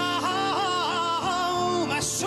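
A man singing a slow, ornamented melody into a microphone, his pitch wavering and bending from note to note, over sustained instrumental accompaniment.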